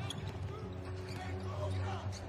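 A basketball being dribbled on a hardwood court, with a few faint short squeaks, over a steady low hum of arena sound.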